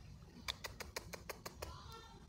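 A quick run of about eight sharp clicks, evenly spaced at six or seven a second, starting about half a second in and lasting just over a second.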